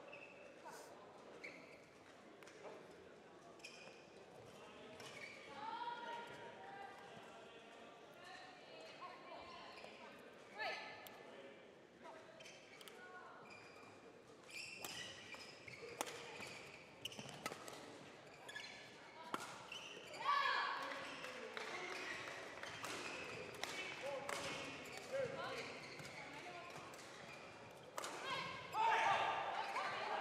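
Irregular sharp hits of badminton rackets on shuttlecocks and players' footfalls on the court, echoing in a large sports hall.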